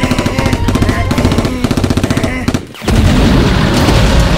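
Rapid automatic gunfire, a fast rattle of shots lasting about two and a half seconds. It breaks off briefly, then a loud low sound starts again for the last second.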